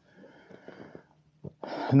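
A man's faint breathing in a pause between sentences: a soft breath out, a moment of near quiet, then a breath drawn in just before he speaks again near the end.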